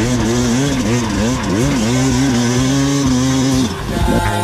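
KTM enduro motorcycle engine revving up and down in quick surges, then holding a steady note for about a second before it cuts off near the end.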